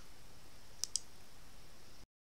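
Computer mouse button clicked twice in quick succession, a little under a second in, over a faint steady hiss.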